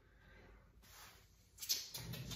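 Faint room tone, then near the end a brief sharp knock with a short scuffle after it, as objects on a glazing bench are handled.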